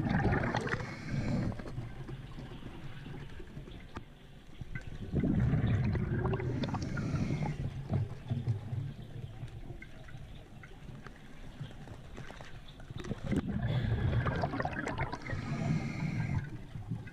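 Underwater bubbling and gurgling of a scuba diver's exhaled breath through the regulator, coming in three swells several seconds apart: at the start, from about five to eight seconds in, and again near the end.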